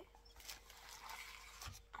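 Faint crinkling and rustling of glossy plastic gift wrap as hands press and handle a wrapped parcel, with a soft thump near the end.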